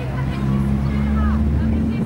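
People talking over a steady low rumble that grows stronger about half a second in.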